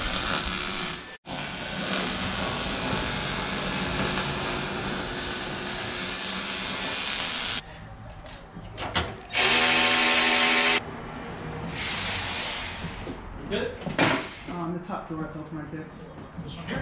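Arc welder crackling steadily as stitch welds are laid along a cracked inner-fender seam, for about six seconds after a brief break near the start. Then a cordless ratchet runs in one burst of about a second and a half with a whirring motor whine, followed by scattered knocks and clatter.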